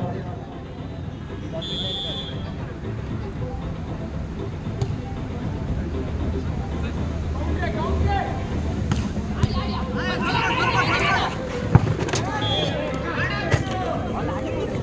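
Volleyball rally amid crowd hubbub and shouting from players and spectators. A short high whistle blast sounds about two seconds in and again near the end, and a sharp slap of a hit ball comes just before the second blast.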